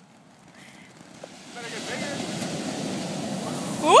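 Small ground firework burning on the sand, hissing as it sprays sparks; the hiss builds up about a second and a half in and then holds steady.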